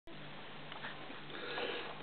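Faint room tone with a low steady hum and a couple of soft sniffs.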